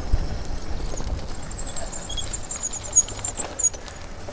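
Road bike rolling along: a low rumble of tyres and wind on the microphone, heaviest in the first second or so, as the bike comes off pavement onto a dirt track. A faint, rapid, high-pitched chirping runs through the middle of it.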